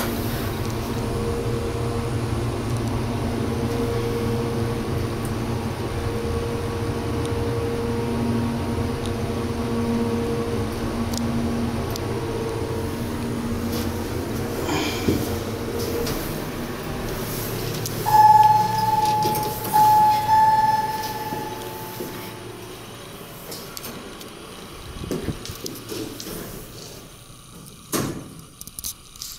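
Montgomery/KONE hydraulic elevator car travelling with a steady low hum for about sixteen seconds. A few seconds after it stops, a loud high electronic tone sounds three times in quick succession, the elevator's floor arrival signal. Then come quieter door and handling knocks.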